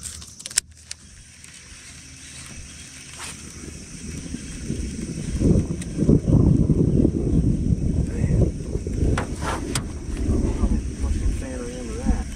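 Rolling thunder: a low rumble that builds from about four seconds in, is loudest around six seconds, and keeps rumbling unevenly to the end. A single sharp click comes just after the start.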